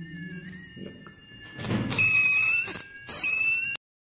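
Flyback transformer and its driver circuit running, giving a loud steady high-pitched whine. Two crackling bursts of high-voltage arcing come, the first around a second and a half in and the second about three seconds in, and the whine shifts slightly in pitch with them. It cuts off suddenly near the end.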